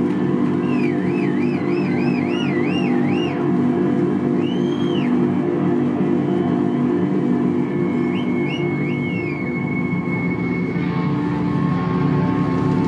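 Live heavy rock band in a sustained drone passage: low amplified guitar chords ring and hold. Over them a high lead tone wavers and bends up and down in pitch, arches once, then gives a few short swoops and settles into a steady held note.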